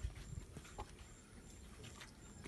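Quiet outdoor background with a few faint footsteps and a faint high-pitched chirp that repeats about every two-thirds of a second.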